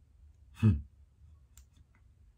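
A man's single short puff of breath, a stifled laugh, about half a second in. A couple of faint clicks follow near the end.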